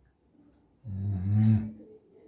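A person's short, low vocal sound, less than a second long, starting about a second in.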